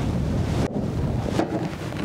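Wind buffeting the microphone: a steady, low rumbling noise.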